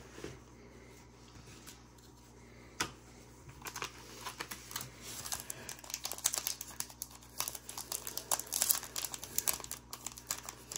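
A trading-card pack wrapper being handled and torn open: quiet at first with one sharp click, then rapid, irregular crinkling from about three and a half seconds in that keeps going.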